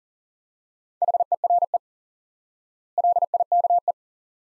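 Morse code sent at 40 words per minute as a beeping tone at one steady pitch: two words, each a quick run of dots and dashes lasting about a second, the second starting about two seconds after the first.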